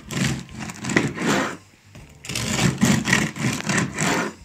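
Serrated bread knife sawing through the crust of a home-baked loaf on a wooden board, in rasping back-and-forth strokes with a short pause about halfway.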